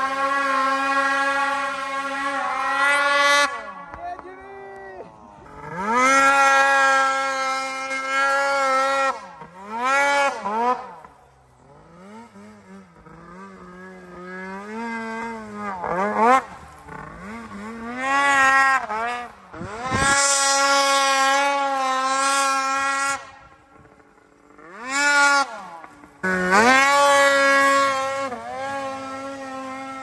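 Two-stroke snowmobile engines on race exhaust cans revving hard in about five bursts of a few seconds each, the pitch climbing under full throttle and dropping as the throttle is let off, with quieter running between bursts.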